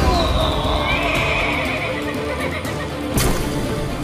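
A horse whinnying: a high call that falls at first, then a long quavering neigh lasting about a second and a half. A sharp hit comes about three seconds in, over background music.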